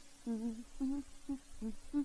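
A person humming a tune in short, separate notes, at a low pitch.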